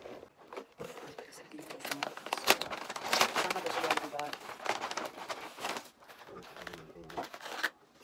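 Brown paper takeout bag rustling and crinkling as a hand digs inside it and pulls out a food container, in a run of crackles about two seconds in that lasts around four seconds.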